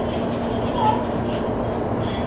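Electric commuter train running slowly, heard from inside the leading car: a steady rumble with a constant low hum, and a brief higher tone near the middle.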